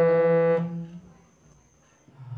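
Harmonium reeds sounding a held note that is released about half a second in and dies away within the next half second, leaving near quiet.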